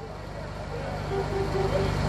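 A pause in speech: a steady low hum and rumble that grows louder toward the end, with faint voices in the background.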